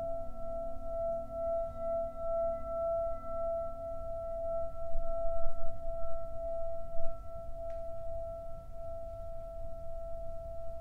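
Hand-held Tibetan singing bowl ringing with a steady, slowly wavering tone and a higher overtone, sung by rubbing its rim with a wooden mallet. A couple of soft knocks fall around the middle.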